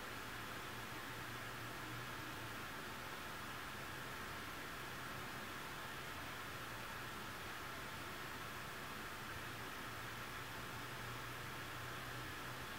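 Steady faint hiss of room tone and recording noise, with a faint low hum underneath; no distinct sounds stand out.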